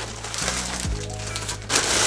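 Background music with a steady bass line and soft beat. Near the end, a plastic packaging bag rustles loudly as it is handled.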